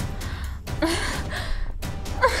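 A woman breathing hard, with breathy exhalations and two short voiced sounds just under a second in.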